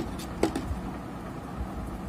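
A single light click, about half a second in, as the multimeter probe tips are handled against the circuit board. Under it is a steady low background noise.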